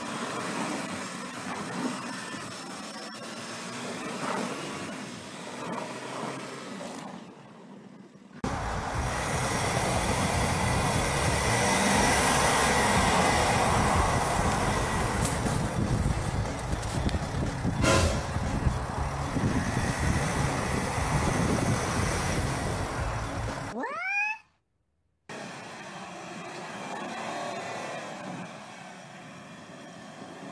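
SUV engines running under load with tyres spinning and scrabbling in snow, across separate clips. The middle clip, from about 8 to 24 seconds in, is much louder and deeper; a short rising whine comes just before a brief dropout near 24 seconds.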